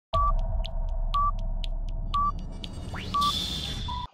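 Countdown intro sound effect: a short electronic beep once a second, four times, over a low rumbling drone with faint ticks between the beeps. Near the end a rising whoosh and hiss come in, with a final, slightly lower beep.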